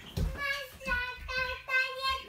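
A child singing to herself, a run of short notes held at nearly the same pitch.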